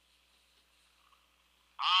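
A pause on a telephone line with only faint line hiss, then a man's voice comes in over the phone near the end.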